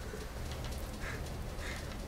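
Low steady hum of room tone, with two faint short sounds about a second in and near the end.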